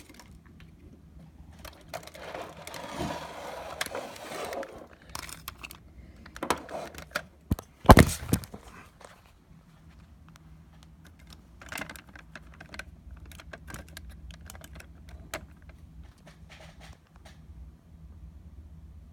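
Handling noise: irregular clicks, light knocks and rustling as plastic action figures and the recording phone are moved about on a wooden table, with one loud knock about eight seconds in, over a faint steady low hum.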